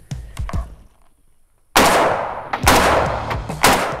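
Three rifle shots fired in quick succession, about a second apart, from a Browning BAR MK3 gas-operated semi-automatic rifle in .308 Winchester. Each shot is a sharp report with a short echoing tail.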